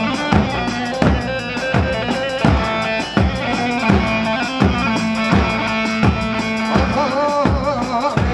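Live Kurdish halay dance music: a deep drum beat falls about every 0.7 s under a held melody, with a wavering melody line coming in near the end.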